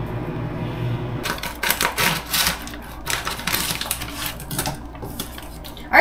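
A low steady tone stops about a second in, followed by a stretch of rapid, irregular clicking and crinkling from a plastic food pouch being handled at the counter.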